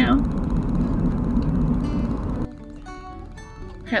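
Steady low rumble of a car's cabin while driving, which cuts off suddenly about two and a half seconds in, leaving soft background music with held notes.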